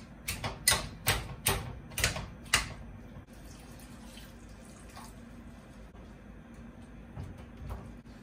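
Masher striking soft roasted butternut squash in a metal pan, about seven quick strokes, then a steady quiet pour of stock into the pan.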